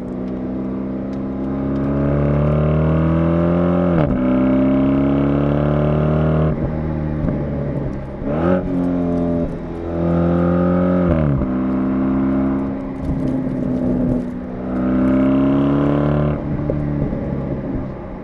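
Alpina B8 Gran Coupe's twin-turbo V8 accelerating hard, the pitch climbing and then dropping sharply at each automatic upshift, several times over, before the engine settles and eases off near the end.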